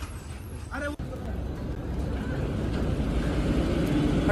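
Road traffic: a passing vehicle's engine and tyre noise, growing steadily louder over the last three seconds.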